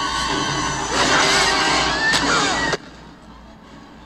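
Tense orchestral horror-film score playing loud, with dense held tones that swell about a second in with wavering high lines, then cut off abruptly near three seconds.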